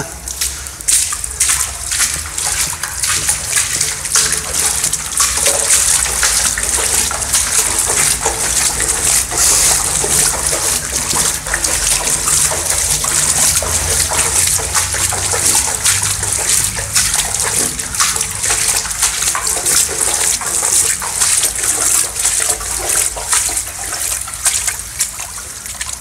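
Shallow water trickling and splashing along the floor of a concrete drainage culvert, a steady wash of water noise dotted with many small splashes and ticks.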